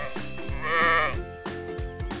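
Upbeat jingle with a steady drum beat. About half a second in, a cartoon sheep bleat sound effect wavers for about half a second.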